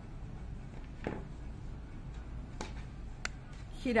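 Quiet room tone with a low steady hum and a few faint clicks, with a spoken word starting at the very end.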